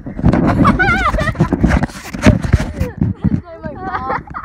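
A person laughing about a second in, amid other voices, over a steady low rumble on the microphone, with one sharp knock a little past halfway.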